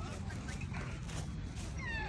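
A dog whining, a short pitched cry that falls in pitch near the end, over faint background voices.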